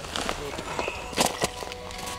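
Light clicks and knocks from a wooden ice-fishing tip-up being handled and set over the hole, with one louder knock about a second in.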